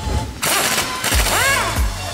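Background music, with a cordless impact wrench running in a loud burst from about half a second in as it turns the tie-rod end nut with a 17 mm socket.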